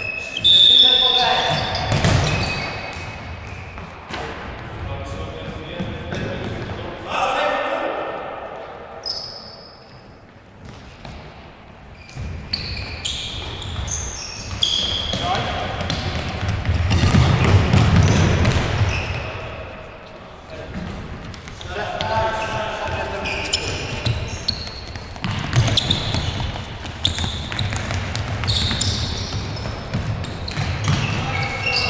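Indoor futsal play in a large sports hall: a ball being kicked and bouncing on the hard court in repeated sharp knocks, with players calling out to each other.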